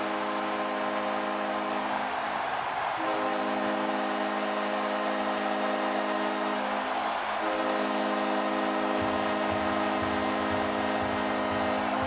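Hockey arena goal horn sounding in long blasts, with two short breaks, over a cheering crowd, the signal of a home-team goal. A low pulsing sound joins about three-quarters of the way through.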